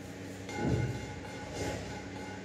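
A steady machine-like hum made of several even tones, with a brief low sound about half a second in.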